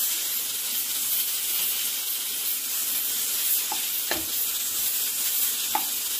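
Diced bacon sizzling steadily in hot oil in a saucepan, with a few light knocks of a spatula against the pan near the end.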